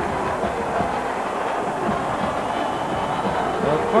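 Stadium crowd noise: a steady, even din of many voices in the stands.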